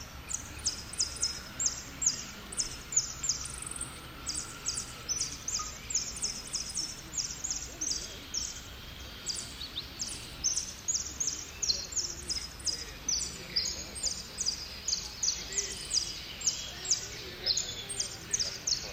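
A jilguero singing a long, unbroken run of short, high notes, repeated evenly about two to three times a second: the rapid repeated-note 'repique' style of song that is judged in singing contests.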